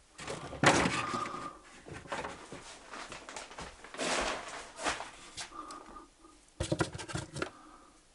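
Hands rummaging in a drawer and a wall cupboard: the drawer sliding, the cupboard door and loose objects knocking and rattling, with a short squeak twice and a burst of sharp rattling clicks near the end.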